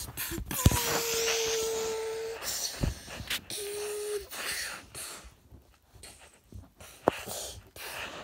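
Plush toys being knocked about and rubbed against the phone's microphone in a play fight: scuffing and rustling with several sharp knocks. Two held tones sound over it, one from about a second in lasting nearly two seconds and a shorter one a little later.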